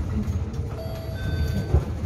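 Low-floor electric city bus riding, a steady low rumble, with a short electronic chime of several held tones about a second in: the signal that comes before the automated next-stop announcement.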